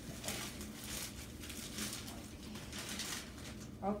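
Plastic mailer bag and packing material crinkling and rustling as it is pulled open by hand, in a run of short irregular rustles.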